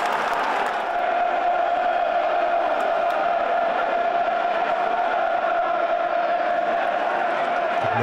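Football stadium crowd chanting in unison. A steady sung chant is held over the general noise of the stands.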